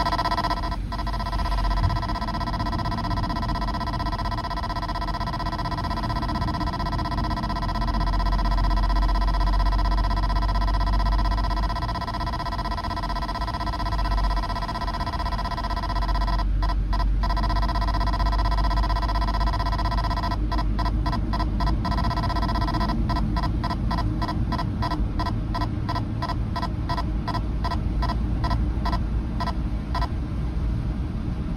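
Escort Passport iQ radar detector sounding its Ka-band alert for a police radar signal. It gives a steady electronic tone that twice breaks briefly into fast beeping, then beeps rapidly through the last third. The low rumble of the car on a wet road runs beneath.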